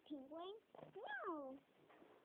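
A cat meowing twice: a short rising meow, then a longer meow that rises and falls in pitch.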